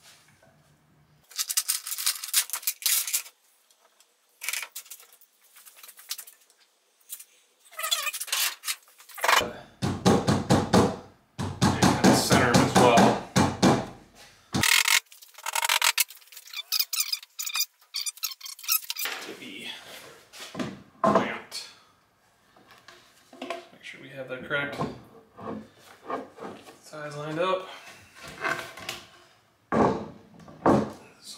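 Wood glue being squeezed from a bottle and brushed along board edges and biscuit slots: irregular bursts of squirting and rubbing noise, with knocks of wooden boards being handled.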